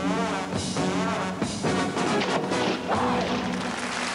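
Music with brass playing a melody of sliding, wavering notes.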